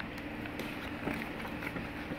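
Faint handling of a paperback picture book as a page is turned, a few soft paper rustles and ticks over a steady background hiss.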